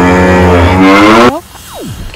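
A loud, low, buzzing horn-like sound effect added in editing. It is held steady while rising slightly in pitch, then cuts off sharply just over a second in. A falling whoosh follows near the end.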